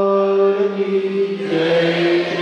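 A man singing a devotional chant into a microphone, holding long steady notes, with a change of note about one and a half seconds in.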